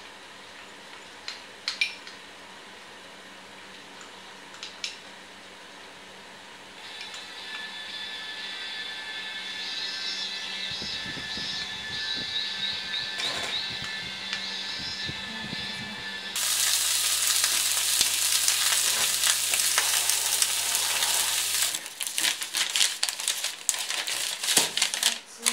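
A few light clinks of a metal spoon against a cup early on. Then a steady whooshing hiss from a small electric circulator fan running, which grows louder and jumps up with a low hum about sixteen seconds in. Near the end come rapid crackles as a knife saws through the crust of a baguette.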